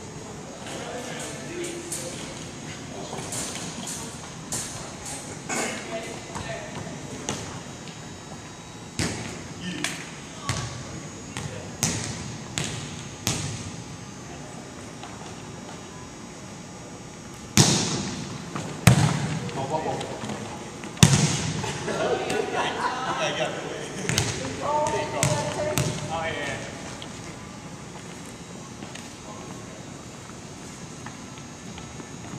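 Volleyballs being hit and bouncing on a hardwood gym floor: a string of sharp smacks, the three loudest about 17 to 21 seconds in. Voices call out during the play.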